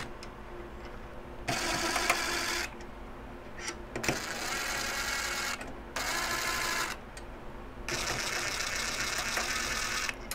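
DeWalt 20V MAX cordless drill/driver running in four short bursts, backing out the screws that hold the NAS's case fan.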